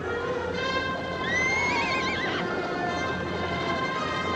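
A horse whinnies once, a rising then wavering call about a second long, over background film music with held notes.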